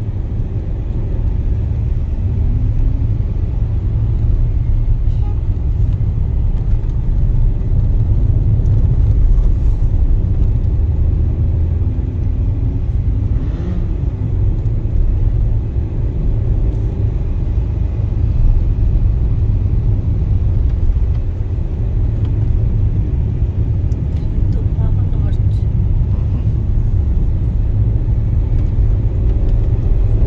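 Steady low rumble of a car's engine and tyres heard from inside the cabin while driving along city streets.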